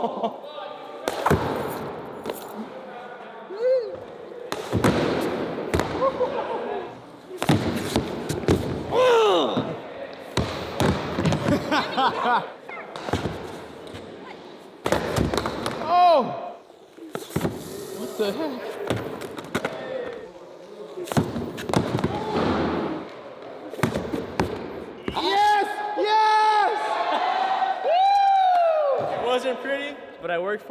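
Excited shouts and exclamations from a group, broken by sharp thumps and clatters of a Onewheel board hitting a concrete floor as a rider falls. Loud, drawn-out calls come near the end.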